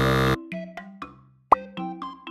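A harsh buzzer 'wrong answer' sound effect lasting about a third of a second, then light plucked background music. A quick pop with an upward sweep comes about halfway through.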